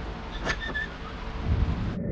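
Hardware being handled at a jet-ski mounting bracket: a light metal clink with a brief ring about half a second in, then a dull thump, over a steady low hum.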